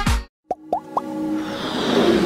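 Dance music with a heavy beat cuts off abruptly, followed by a brief silence, then three quick rising bloops and a swelling whoosh: the sound design of an animated logo intro.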